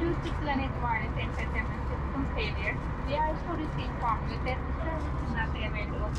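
Steady low drone of a jet airliner's cabin during service in flight, under a murmur of passengers and cabin crew talking.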